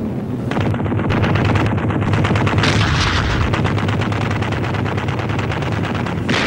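A Mosquito night fighter's cannon firing in a long, rapid burst, starting about half a second in, over the steady drone of aircraft engines.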